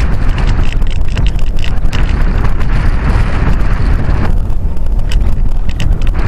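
Wind noise from airflow buffeting the microphone of a camera mounted on an RC glider gliding with no motor running: a loud, steady low rumble and hiss with scattered faint ticks. The hiss thins out for a moment about four seconds in.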